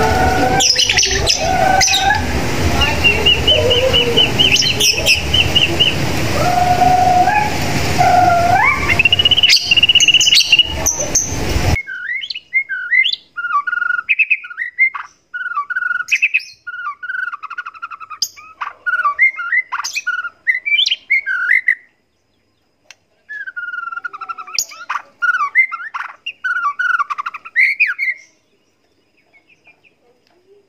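White-rumped shama (murai batu) singing. For about the first twelve seconds it gives long clear whistled notes and rising glides over a steady hiss. After an abrupt change to a clean background come rapid, varied warbled phrases in two runs with a short pause between them.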